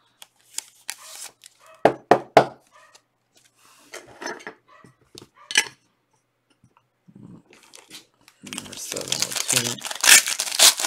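A few sharp clicks and taps from a trading card being handled into a clear plastic holder. Then, from about a second and a half before the end, a foil card pack crinkles and tears as it is opened.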